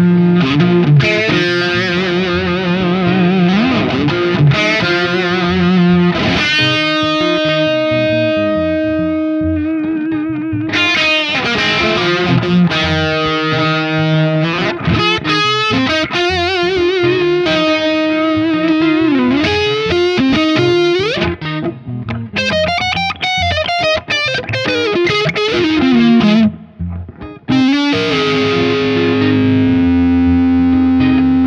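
Les Paul electric guitar played through a distorted amp: a lead line of sustained notes with bends and wide vibrato. The playing breaks off briefly near the end.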